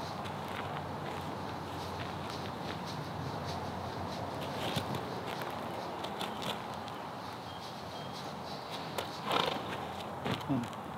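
Outdoor background hiss with scattered light scuffs and clicks of shuffling footsteps and hooves on gravel, and a short, louder rush of noise about nine seconds in.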